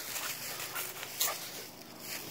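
A Vizsla dog making a short, high vocal sound about a second in, over the rustle of dry fallen leaves.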